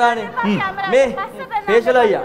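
Speech: people talking, with voices overlapping.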